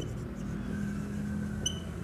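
Marker pen writing on a whiteboard, with faint squeaks, over a steady low hum.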